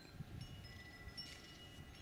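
Faint chimes: a few clear, high tones come in one after another and ring on together over a faint low background rumble.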